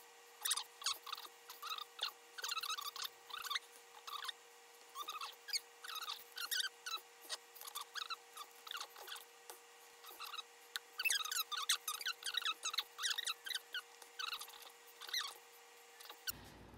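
Irregular short squeaks of nitrile-gloved hands and flexible plastic cups rubbing against each other as acrylic paint is poured from cup to cup, with a faint steady hum underneath.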